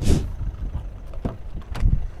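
Handling noise as the camera is moved: a sharp rustling whoosh at the start, then an uneven low rumble of wind on the microphone with a couple of light knocks.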